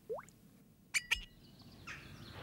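A last rising plop from colouring poured out of a small glass bottle, then two quick bright clinks with a short ring about a second in.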